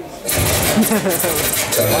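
A man laughing and speaking briefly, loud and close to the microphone.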